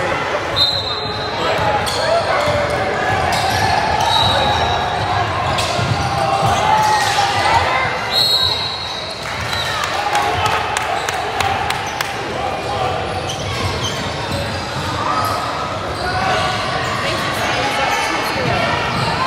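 Indoor basketball game: a ball bouncing on a hardwood court with frequent sharp knocks, over steady echoing chatter from spectators and players in the gym. A few short, high, steady squeals or whistle-like tones come about a second in, around four seconds, and around eight seconds.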